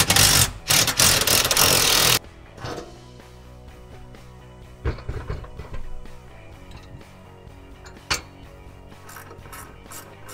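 Cordless drill/driver running in two short bursts over the first two seconds, taking the bolts out of a swivel-seat base. Then a few light metal clicks from parts being handled, over background music.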